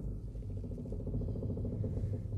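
A deep groaning, creaking rumble of old trees, a film sound effect, with a fast pulsing rasp like straining wood setting in about half a second in.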